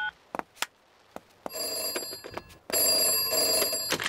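A telephone ringing twice, each ring about a second long, just after the last beep of a number being dialled on a push-button phone.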